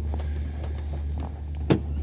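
Steady low hum of a gondola cabin running along its cable, with one sharp click near the end.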